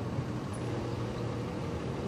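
Steady low rumble of motor vehicle traffic in outdoor street ambience.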